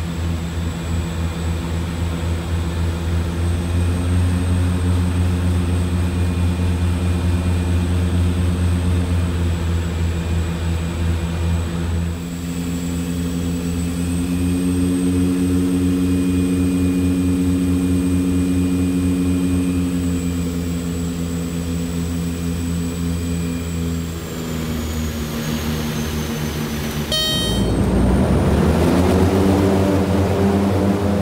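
Twin Otter's two turboprop engines heard from inside the cabin: a steady propeller drone with a high turbine whine, changing pitch and level twice as power is adjusted on the approach. Near the end a sudden jolt at touchdown, then louder engine noise rising in pitch as the propellers are put into reverse to stop on the short runway.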